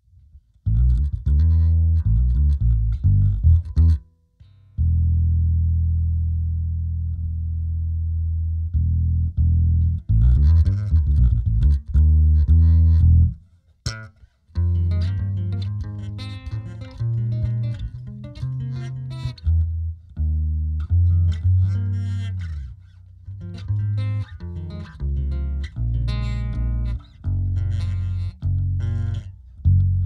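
Electric bass guitar played through an effects chain with a bit crusher, filter and limiter, shaped by a ToneX One amp model into a Zoom B6. A phrase of plucked notes, a long low note held and left to decay about five seconds in, then a busier line after a short break near the middle.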